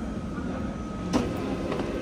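Steady low mechanical hum and rumble of an airport self-service bag-drop machine, with a sharp click just over a second in.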